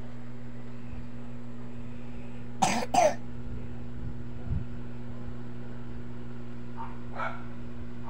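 Two short coughs about half a second apart, over a steady low electrical hum.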